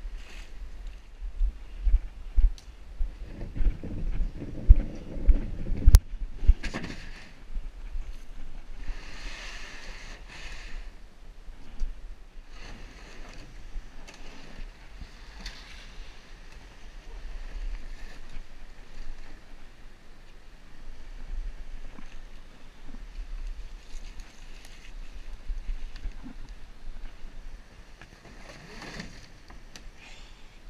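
Sit-on-top kayak and paddle on fast floodwater: a series of sharp knocks and thumps over roughly the first six seconds, then a lower steady rush of water and wind on the microphone with a few hissy swells.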